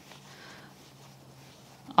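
Quiet room tone: a faint steady low hum under soft hiss, with no distinct knocks or clicks.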